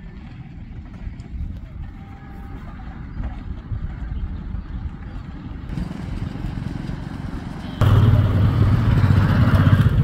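Road traffic noise: a motor vehicle engine runs nearby with a low rumble, and it becomes much louder suddenly about eight seconds in.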